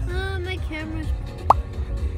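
Background lofi future-bass music with held, gliding melodic notes over a steady bass. About one and a half seconds in, a short sharp rising blip stands out as the loudest sound.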